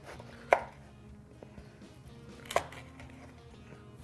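Chef's knife cutting through baked, cheese-topped French bread and striking the wooden cutting board, twice, about two seconds apart.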